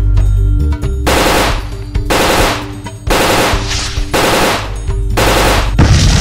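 Automatic rifle fire in five short bursts about a second apart, each about half a second long. A loud explosion starts just before the end.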